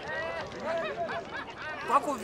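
Men's voices talking and laughing.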